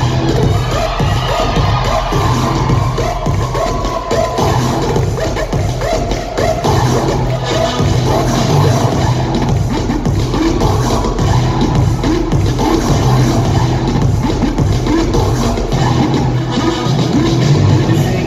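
Loud dance music with a heavy, steady bass beat, played for a crew's dance routine.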